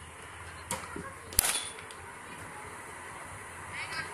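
Cricket bat striking a ball fed by a bowling machine in the nets: one sharp crack with a brief ringing tail about a second and a half in, preceded by a lighter knock.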